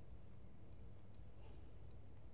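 A few faint, sharp clicks of a computer mouse as the presenter drags and clicks through a web map, over a low steady room hum.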